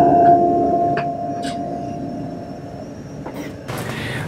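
Canon imagePROGRAF PRO-4000 large-format inkjet printer feeding in a sheet of paper: its feed motor runs with a steady whine that slowly fades over about three seconds, with a click about a second in.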